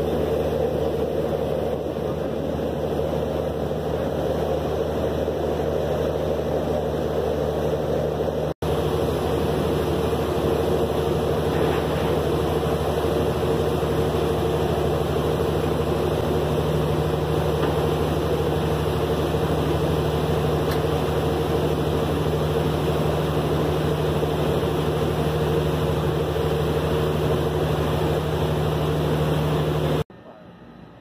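A river ferry's engine drones steadily under way, with the rush of its wake and wash. There is a split-second gap about a third of the way through.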